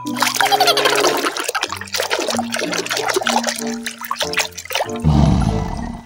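Background music with held notes over water sloshing and splashing as a plastic toy is swished in a tub of soapy water. A louder splash comes about five seconds in as the toy is lifted out.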